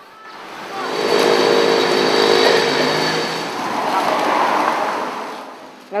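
A motor vehicle passes close by. Its engine and road noise swell up over the first two seconds, dip briefly, rise again and fade away near the end.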